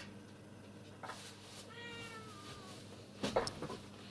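A faint animal call, one drawn-out note sliding down in pitch, about two seconds in. It is followed near the end by a brief clatter of knocks, louder than the call.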